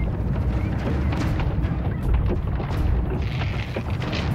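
A huge wooden effigy being hauled on ropes through a wooden gate: a heavy, continuous low rumble with a few sharp wooden knocks and thuds, the loudest about a second in and again about two seconds in.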